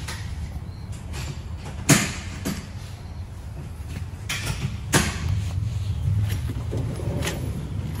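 Several sharp clicks and knocks from a steel tool box being handled, over a steady low hum.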